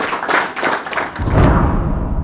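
Audience applause, dense clapping that breaks off about a second in. A deep boom from an outro music sting follows and is the loudest sound.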